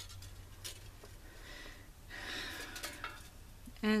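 Thin aluminium sheet cut from a soda can being handled: faint crinkling with a few light clicks, and a louder rustle about two seconds in as die-cut flower shapes are worked out of it.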